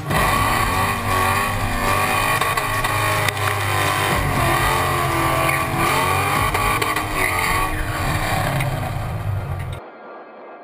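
Whipple-supercharged 4.6 L V8 of a 2005 Roush Mustang revving hard, its pitch rising and falling, as the car spins donuts. The sound cuts off suddenly near the end.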